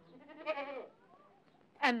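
A goat bleats once, a short quavering call about half a second in.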